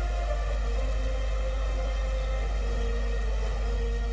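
Background news music: a steady, deep drone with faint held notes above it.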